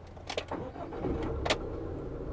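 A Fiat Ducato 140 MultiJet 2.2-litre four-cylinder turbodiesel cranking and catching, then settling into a steady idle from about a second in, with a couple of light clicks. It sounds full yet quiet.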